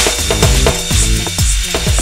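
Electronic dub mix: short deep bass-synth notes and kick drums repeat under busy, ratchet-like clicking percussion, over a steady high hiss.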